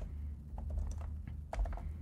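Typing on a computer keyboard: a run of separate, irregular keystroke clicks over a low steady hum.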